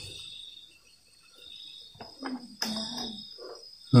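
Crickets chirping in the background, a steady high trill, with a few light knocks and handling sounds about two to three seconds in.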